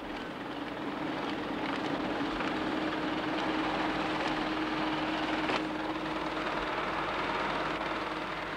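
Steady whirring of 1960s computer machinery running, with a constant low hum and a few faint clicks.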